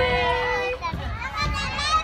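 Young children calling out "bye-bye" in high voices. One long drawn-out call gives way about halfway in to several voices overlapping, amid playground chatter.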